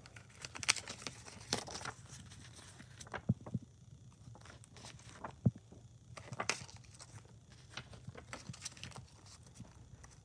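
Paper leaflets being handled inside a plastic Blu-ray case: soft rustling with scattered light clicks and taps, the sharpest about five and a half seconds in.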